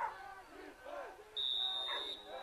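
Several voices shouting and calling over one another, with a shrill referee's whistle blast starting about one and a half seconds in and lasting under a second.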